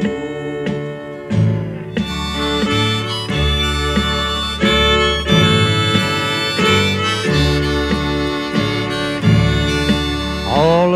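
Instrumental break in a country song: a harmonica plays the melody in sustained notes over acoustic guitar strumming.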